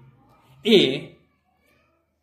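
A man's voice saying a single short syllable about a second in, then a pause.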